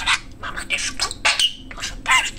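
Budgerigar chattering in rapid, scratchy syllables that imitate Japanese speech, with a short whistled note partway through.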